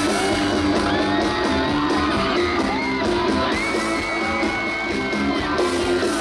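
Live rock band playing an instrumental passage, with a lead electric guitar holding long notes that bend and slide, over bass and drums.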